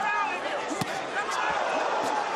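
Boxing arena crowd noise with shouting voices, and a couple of thuds of gloved punches landing during a close exchange.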